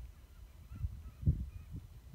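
Faint, short chirping calls repeating over a low rumble, with a few dull thumps.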